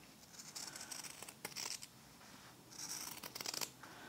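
Fabric scissors snipping through folded cotton fabric, cutting close around a sewn seam. The cuts come quietly, in several short runs, with a pause a little before the middle.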